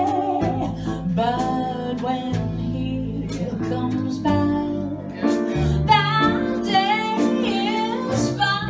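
Live small jazz combo: a woman singing a slow ballad line with vibrato over piano chords and walking upright bass, with light cymbal strokes from the drums.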